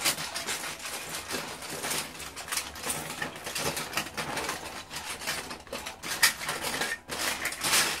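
Loose plastic Lego bricks clicking and clattering against each other as hands rummage through and sort a pile of them, with a sharper clack a little after six seconds in.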